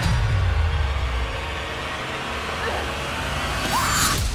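Horror movie trailer soundtrack: a heavy low rumbling swell, then tense, even background sound design, with a short rising sound near the end.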